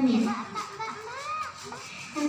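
A girl's voice finishes a phrase into a microphone, then faint distant children's voices and calls are heard in the background during the pause.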